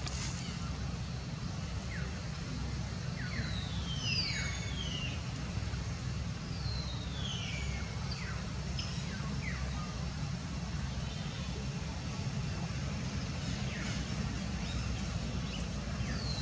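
Steady low rumble with a scattering of short, high squeaks or chirps that fall sharply in pitch, several in a cluster about three to five seconds in and a few more later and near the end.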